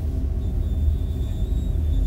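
A deep, steady rumble, with a faint thin high whine coming in about half a second in.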